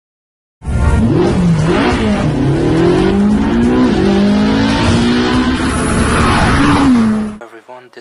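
Jaguar F-Type R's supercharged 5.0-litre V8 revving hard, its pitch climbing and dropping several times as in hard acceleration through the gears, over a loud rush of road and exhaust noise. It starts suddenly under a second in and cuts off abruptly about seven seconds in.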